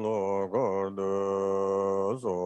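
A male voice chanting Tibetan Buddhist liturgy in a drawn-out near-monotone, each syllable held on one pitch with short breaks between syllables.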